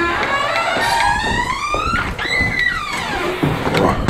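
Door hinges creaking in long squeals, first a slow rise in pitch, then a higher arching squeal that falls away.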